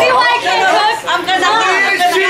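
Several people talking loudly over one another: lively chatter with no single voice standing out.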